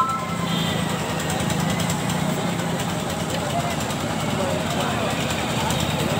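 Indistinct crowd chatter mixed with a motorcycle engine idling; a vehicle horn's two-note tone cuts off in the first half-second.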